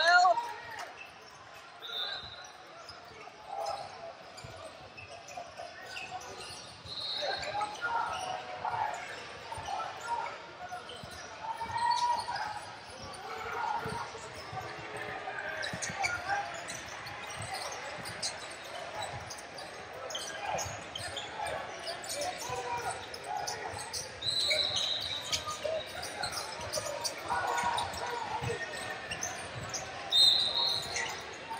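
Basketballs bouncing on a hardwood gym floor, with many sharp dribble strokes through the whole stretch, under the indistinct voices of players and spectators, echoing in a large hall.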